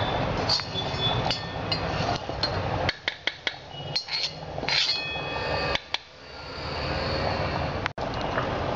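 Scattered clinks and knocks of steel kitchen vessels being handled, some ringing briefly, over a steady background hum.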